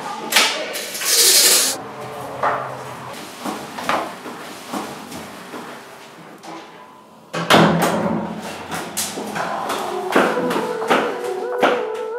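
Scene sounds of someone moving about a tiled room: a door pushed open, a short loud hiss about a second in, then scattered knocks, clicks and rustling that turn busier from about seven and a half seconds in.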